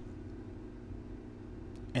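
Steady low mechanical hum of background machinery, with a faint click near the end.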